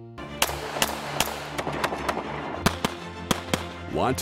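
Music with a steady bed of tones and sharp, loud percussive hits, at first about two or three a second and then less evenly spaced.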